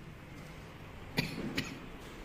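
A person coughing: two short coughs close together, about a second in.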